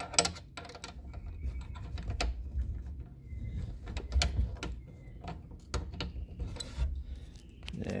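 Hand ratchet turning a hex bit socket on the oil drain plug of a BMW N20 engine, giving irregular clicks and metallic clatter over a low rumble.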